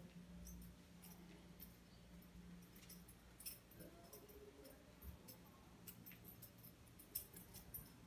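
Near silence: room tone with a faint steady hum and scattered faint clicks.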